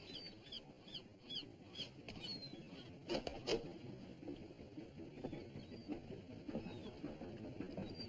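A small bird chirping over and over, short high falling notes about two or three a second, fading after the first couple of seconds. Two sharp knocks come just after three seconds in, over a faint background murmur.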